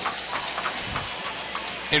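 Hockey arena crowd noise: a steady hubbub from the stands.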